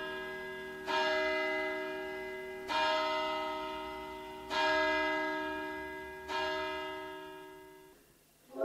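A recorded church bell tolling through the stage loudspeakers: five slow strokes, the later ones nearly two seconds apart, each ringing on and dying away before the next.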